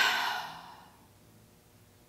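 A woman's long, breathy sigh, loudest at the start and fading out within about a second, acting out a sad, reluctant reaction.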